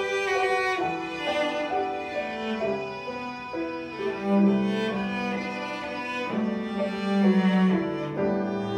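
Live piano trio playing: cello and violin bowing sustained melodic lines over grand piano accompaniment.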